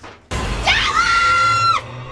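A woman's high-pitched scream that rises sharply, holds steady for about a second and cuts off abruptly near the end, over low rumbling horror-film music.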